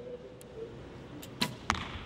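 A recurve bow shot: a sharp crack as the string is released, then, about a third of a second later, a second sharp crack as the arrow strikes the target.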